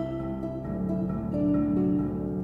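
Harp and marimba playing an eighth-note accompaniment together, with the harp taking much the same notes as the original piano part and the marimba playing three-note chords. It is a sampled orchestral mock-up from a MIDI sequence.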